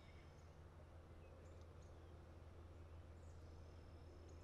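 Near silence: faint outdoor ambience with a low steady hum and a few faint, brief bird chirps.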